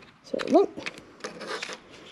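Scissors cutting through thin cardboard: a few short crisp snips, with a brief spoken word just before them.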